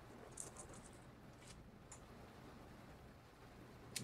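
Near silence: a few faint ticks and rustles of a plant stem being handled, a small cluster near the start and single ticks about one and a half and two seconds in.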